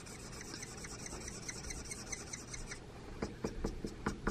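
Felt-tip furniture touch-up marker rubbed over a wooden chair arm: faint, quick, repeated scratchy strokes that turn into sharper ticks in the last second.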